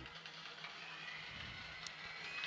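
Faint, steady outdoor stadium background noise between plays, with a few faint thin tones and no clear single event.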